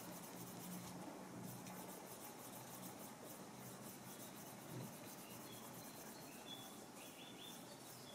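Faint back-and-forth rubbing of a hand edge slicker along a waxed, dyed leather edge, burnishing the melted wax into the edge.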